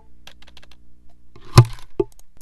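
Typing on a computer keyboard: a few light, sparse key clicks, then one hard, loud knock about one and a half seconds in and a smaller one at the end.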